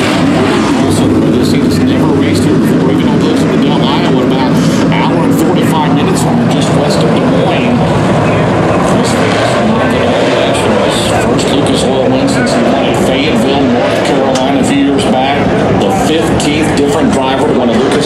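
A field of dirt late model race cars' V8 engines running together at steady pace-lap speed before the start, a dense, even drone with no sharp revving.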